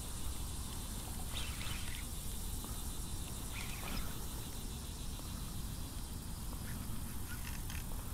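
A few brief animal calls, about one and a half, three and a half and seven and a half seconds in, over a steady low rumble.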